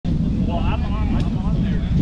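Wind rumbling on the camera microphone, with faint voices calling across the field.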